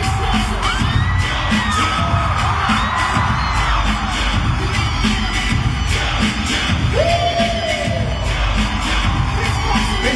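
Live pop music with a steady beat played loud over an arena sound system, recorded from the audience. High screams from fans rise and fall over it, a few in the first seconds and another near the end.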